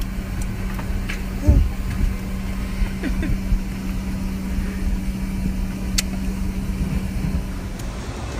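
Airliner cabin noise: a steady drone with a constant low hum. A sharp click comes about six seconds in, and the drone cuts off at the very end.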